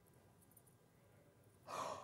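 Near silence, then near the end a woman's short, breathy gasp of surprise.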